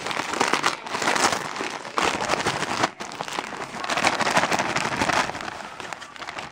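Gift wrapping paper crinkling and rustling as a present is unwrapped by hand, in several loud bursts that ease off near the end.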